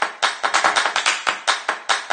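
Fast, even run of hand claps, about six a second: the clap percussion of an electronic music sting.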